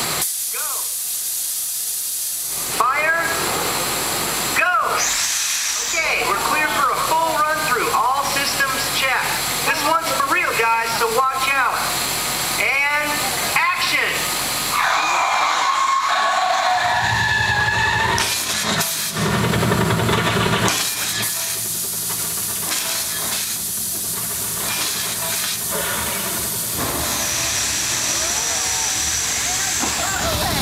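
Hiss of a water jet spraying, with a voice talking over it for much of the time. A deep rumble comes in a little past the middle.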